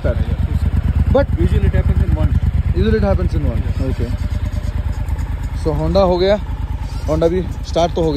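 Adventure motorcycle engine running at a fast, even idle just after a cold start at high altitude, with voices over it.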